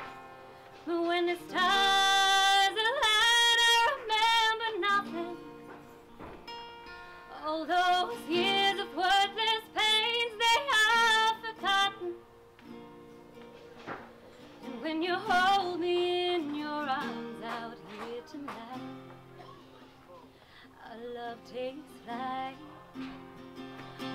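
A woman singing live over a strummed acoustic guitar, holding long wavering notes in three phrases, then the guitar carries on more quietly near the end.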